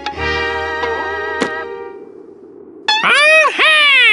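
Cartoon background music holding sustained chords, with a short click about one and a half seconds in, fading out about two seconds in. About three seconds in comes a loud, high-pitched cartoon monkey chatter whose pitch swoops up and down.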